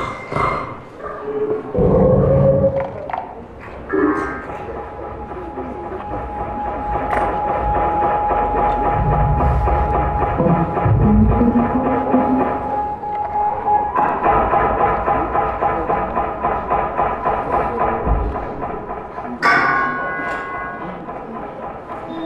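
Live electroacoustic laptop music made in Max/MSP: a dense, shifting electronic texture. Low thuds come about two seconds in, a steady mid tone holds through the middle, a thick layer of rapidly pulsing tones takes over about two-thirds of the way in, and a sudden bright burst comes near the end.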